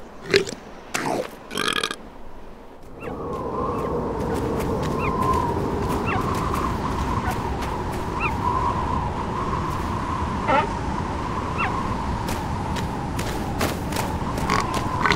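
Short cartoon seal grunts in the first couple of seconds. Then, from about three seconds in, the steady blowing of snowstorm wind with a faint whistle and a few small chirps above it.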